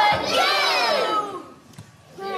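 A group of preschool children's voices calling out together in one loud, pitch-sliding cry, which stops about a second and a half in.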